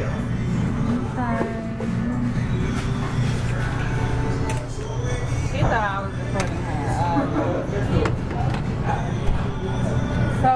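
Restaurant background sound: music playing with indistinct voices over a steady low hum.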